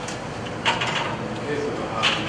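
Indistinct speech: a voice talking too unclearly for words to be made out.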